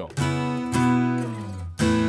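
All-koa Breedlove Exotic King Koa acoustic guitar played unplugged: three strummed chords, each left ringing.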